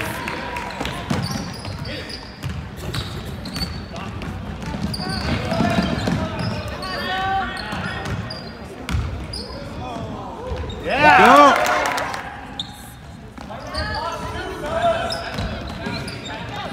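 Game sounds in a school gym: a basketball bouncing on the hardwood floor, with voices around the court and a louder burst of pitched sound about eleven seconds in.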